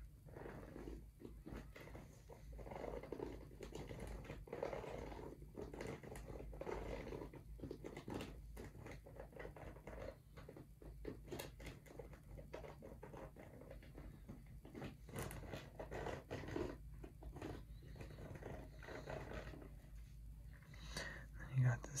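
Fingertips scratching and rubbing over the rubber nubs of a golf shoe's spikeless outsole: a faint, irregular scratchy rustle made of many small clicks.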